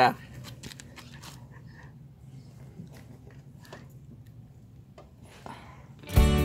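Faint, scattered small clicks and light taps of hands and a metal tool being handled near a motorcycle engine's oil drain bolt, with a soft scrape near the end.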